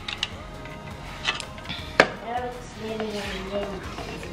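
A person's voice, indistinct and without clear words, in the second half, following a sharp click about two seconds in, with a few fainter clicks earlier.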